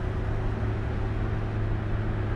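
Steady low rumble of a car on the move, heard from inside the cabin: engine and road noise with a constant hum.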